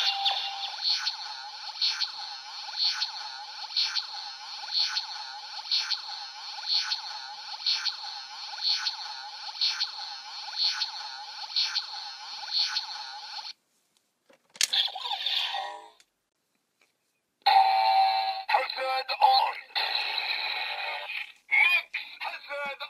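Electronic standby loop from a DX Build Driver toy belt, a repeating synthesized beat pulsing about once a second, which cuts off about 13 seconds in. After a short gap come further electronic toy sound effects.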